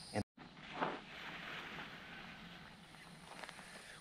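Faint outdoor rustling, with a soft brief scuff about a second in, after a short total dropout of sound at the start.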